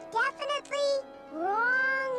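A cartoon character's high-pitched wordless vocal sounds: a few short worried cries in the first second, then a long rising, questioning note held to the end. A sustained chord of background music plays underneath.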